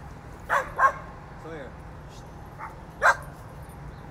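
A dog barking: two quick barks about half a second in, then one more about three seconds in.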